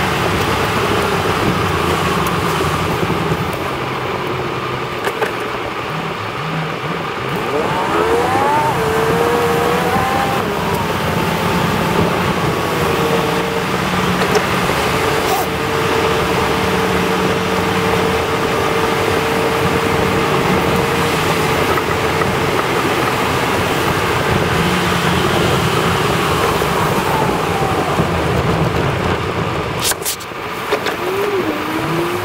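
Car-cabin road noise while driving on a wet, slushy highway: steady tyre hiss under an engine drone. About eight seconds in, a pitch rises, and midway a steady tone holds for several seconds.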